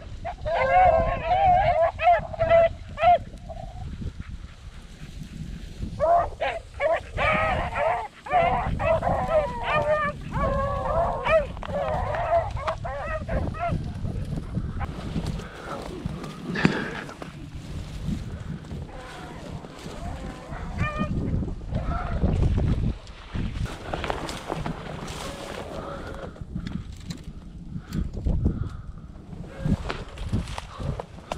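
A pack of beagles baying on a rabbit track, several voices overlapping, loudest in the first few seconds and again from about six to fourteen seconds in, fainter later on. Wind buffets the microphone underneath.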